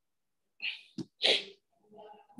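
A man sneezing once: a short breathy burst about half a second in, a catch, then the louder hissing burst of the sneeze just after a second.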